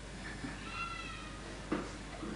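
A faint, short high-pitched call, about half a second long and wavering slightly, over quiet room tone, with a brief sharp breath-like sound near the end.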